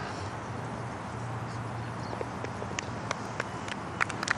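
Steady outdoor ambience with a low hum, then scattered hand claps from spectators beginning about two and a half seconds in: the start of applause for a putt on the green.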